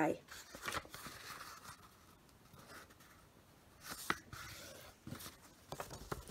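Glossy magazine paper rustling softly as it is unfolded and refolded on a table for an origami crease, with a few sharp crinkles about four seconds in as the fold is pressed down.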